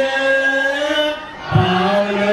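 Ethiopian Orthodox hymn (mezmur) sung unaccompanied by many voices: one long held note, a short break just past the middle, then the singing resumes.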